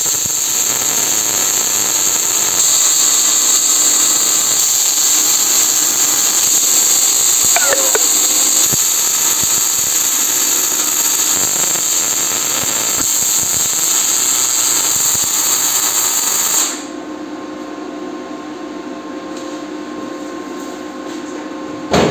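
Electric arc welding on sheet steel: a long continuous weld run with a steady crackling hiss. The arc stops about 17 seconds in, leaving a quieter steady hum.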